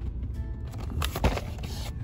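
Soft background music, and about a second in a scraping rustle with one sharp knock as the toy's cardboard-and-plastic packaging is turned over in the hands.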